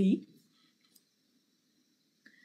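A woman's voice finishing a word, then near silence with a few faint clicks.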